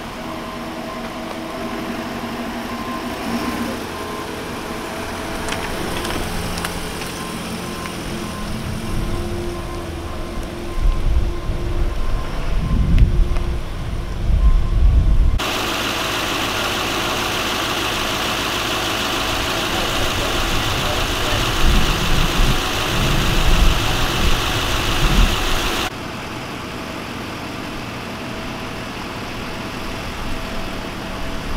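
Steady hum of idling emergency vehicles, with irregular low rumbles and faint voices. About halfway through, the sound switches abruptly to a louder, even hiss for about ten seconds, then switches back.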